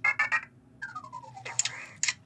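Anki Vector robot's electronic sounds as it goes to sleep: a quick run of chirping beeps, then a falling tone about a second in, and a short hiss near the end.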